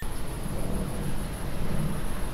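Outdoor field ambience dominated by low, patternless wind noise on the microphone. It starts abruptly, with a faint steady high hiss above it.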